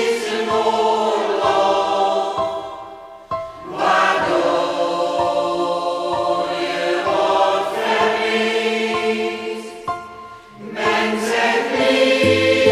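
Choir singing long, held phrases, with the sound falling away briefly about three seconds in and again near ten seconds before the next phrase.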